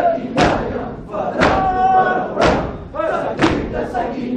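A crowd of mourners beating their chests in unison (matam): a loud collective slap about once a second, four strikes in all, with men's voices chanting between the strikes.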